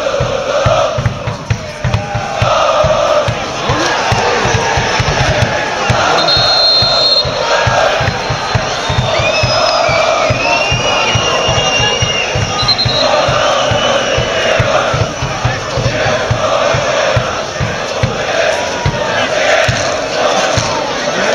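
A large crowd of football ultras chanting in unison, one massed chant sung over and over in repeated phrases. A few high whistles sound around the middle.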